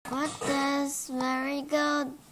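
A girl's voice speaking in long, level-pitched syllables that sound almost sung.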